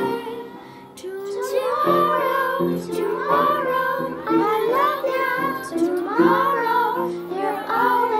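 A children's choir singing in unison. A held note fades out in the first half second, and the singing comes back in just after a second and continues in phrases.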